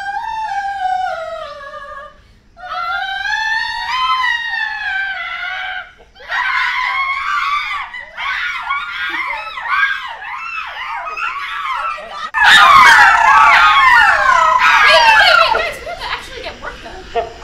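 A group of female soprano voices doing a vocal warm-up: a high sung note that swells up and falls back, then a second rising-and-falling glide. From about six seconds in it breaks into many overlapping high whoops and squeals swooping up and down, turning into loud screaming for the last few seconds.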